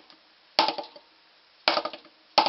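Two single drumstick strokes on a rubber practice pad set on a snare drum, about a second apart, each a sharp hit that dies away quickly.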